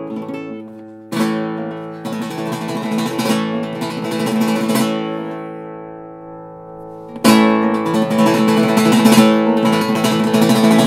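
Cutaway flamenco guitar strummed: a struck chord about a second in, then a burst of rapid flamenco strumming that rings out and fades. A louder attack a little after seven seconds starts another passage of fast strumming that runs to the end.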